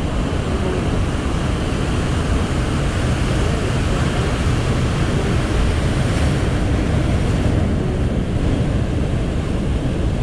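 Ocean surf breaking and washing among shoreline rocks, heard as a steady wash, with wind buffeting the camera's microphone as a low rumble.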